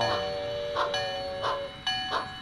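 Steam locomotive bell clanging about every 0.7 s over a long, steady whistle. The whistle stops near the end as a higher tone starts.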